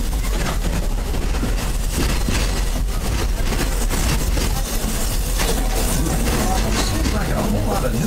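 Open-sided passenger car of a steam train rolling along the track: a steady low rumble with frequent rattles and clicks from the car and wheels, and passengers' voices under it.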